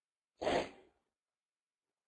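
A single short sigh, a breath let out into the microphone, lasting about half a second.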